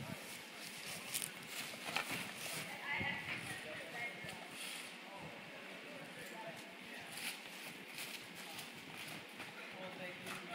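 Faint, indistinct voices of people outdoors, with a few light clicks.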